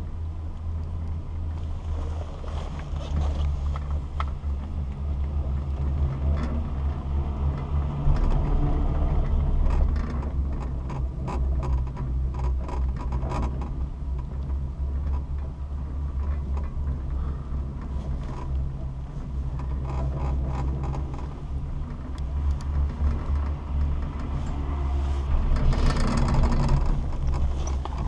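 Steady low rumble of a detachable chairlift ride heard from inside the closed bubble, with wind buffeting. Near the end a louder stretch of rattling as the chair passes through the sheave rollers on a lift tower.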